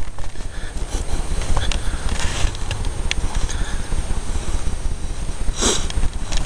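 Steady low rumble of wind and handling noise on a handheld camera's microphone while walking through grass, with a few short breathy rushes, the loudest near the end.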